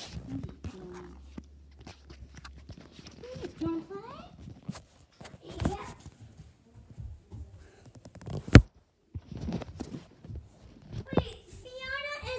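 A child's voice in short, scattered wordless fragments, with camera handling noise and a sharp knock about eight and a half seconds in, the loudest sound.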